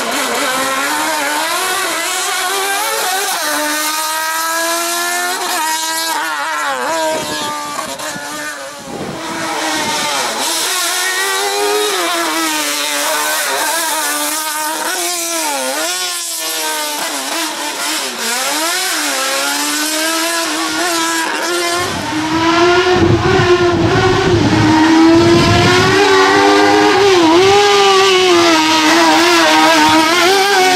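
Small hatchback race car's engine revving hard, its pitch climbing and falling back again and again as the driver accelerates, shifts and brakes through a cone slalom. About two-thirds of the way through it grows louder and deeper as the car comes close.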